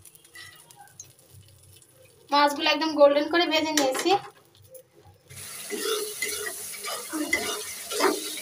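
A voice is heard briefly about two seconds in. From about five seconds in, spice paste fries in hot oil in a kadai with a steady sizzle, while a metal spatula stirs and scrapes it against the pan.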